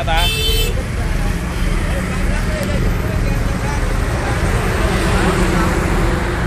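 Street traffic noise with a steady low rumble, and a short horn toot right at the start.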